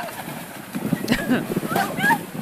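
Water splashing as a horse plunges into a pond, with people's voices crying out over it from about a second in.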